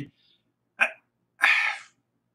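A man's voice in a pause of speech: a short word, then a half-second breathy exhale or sigh.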